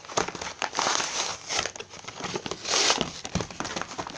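Plastic packaging of a toy slime set crinkling and rustling as it is handled and opened, in irregular bursts with small clicks; the loudest bursts come about a second in and again near three seconds.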